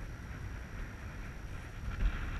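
Wind buffeting the microphone outdoors: an uneven low rumble with a faint hiss over it.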